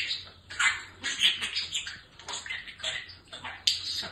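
Budgerigar chattering and warbling: a fast, continuous run of short chirps, squeaks and clicks.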